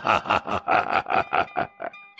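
A man's voice laughing in a quick run of 'ha-ha-ha' pulses, about a dozen, that fade toward the end. It is a storyteller voicing a jinn king's mocking laugh, with faint background music under it.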